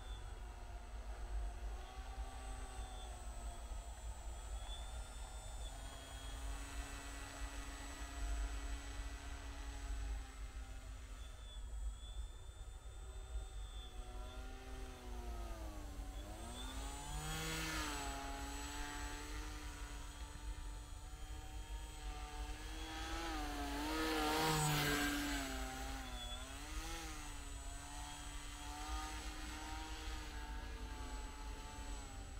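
Motor and propeller of a radio-controlled paramotor in flight, a buzzing whine whose pitch dips and rises again and again with the throttle. It grows louder as the model passes close, loudest about three quarters of the way through.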